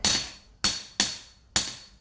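Hammer striking metal four times in an uneven rhythm, each blow a sharp clink with a high, ringing tail that dies away: a bar of gold being forged out.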